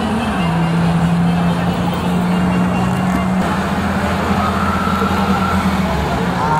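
Old cars running slowly past at parade pace, with background music carrying long held low notes that change pitch twice.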